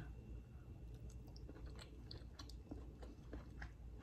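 A person chewing a bite of stir-fried steak: faint, with small scattered clicks of the mouth.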